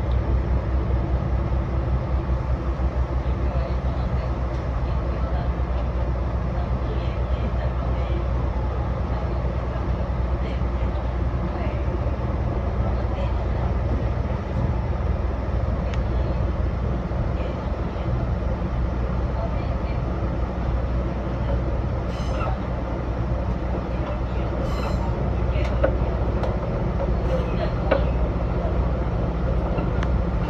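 Diesel railcar running along single track, a steady low engine drone under the rumble of the wheels on the rails. A few sharp clicks and knocks come in the last several seconds.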